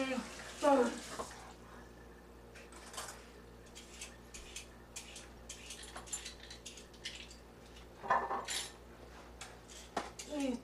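Kitchen clatter: scattered light clicks and knocks of dishes and utensils being handled, with a louder burst of noise about eight seconds in.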